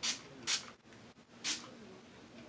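Three short hisses from an aerosol fart spray can being squirted, about half a second and then a second apart.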